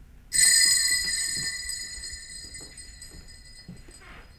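A high metallic bell-like chime struck once, about a third of a second in, ringing with several high tones that fade away over the next few seconds.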